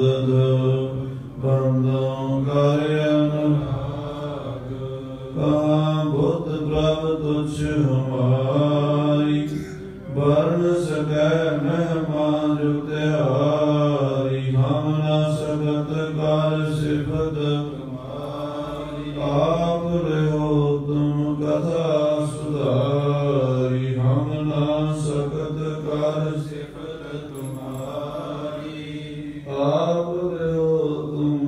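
A man's voice chanting a Sikh devotional recitation, slow and melodic, with long held notes and short pauses for breath between phrases.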